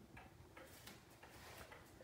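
Faint, regular ticking of a Seikosha regulator schoolhouse clock's mechanical pendulum movement. The clock is running steadily now that its case is tilted slightly to level the movement.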